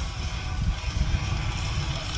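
Wind rumbling on the action camera's microphone and a mountain bike rattling over a dirt singletrack, with guitar music underneath.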